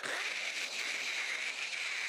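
A man's voice imitating a panicking cat: one long raspy hiss into a handheld stage microphone.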